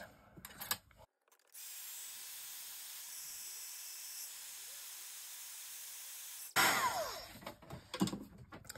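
Craft heat tool blowing hot air with a steady hiss, drying the ink on a die-cut paper log; it starts and stops abruptly and runs for about five seconds.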